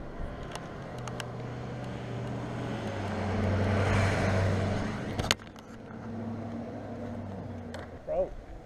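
Motor vehicle engine running steadily, growing louder to a peak around the middle and easing off, with one sharp knock shortly after the peak.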